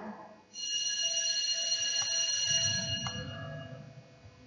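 High-pitched ringing made of several steady tones, like an alarm or bell, starting about half a second in and fading out after about three seconds, with a few faint clicks.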